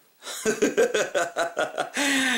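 A man laughing: a quick run of short chuckles that starts a moment in and carries on to the end.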